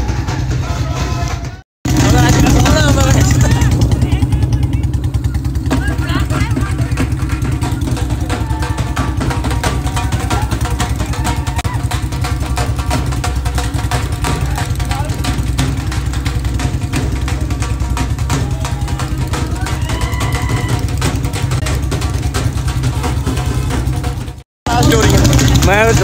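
Several motorcycles riding together, their engines giving a steady low drone, with voices shouting over them. The sound cuts out abruptly twice, once early and once near the end.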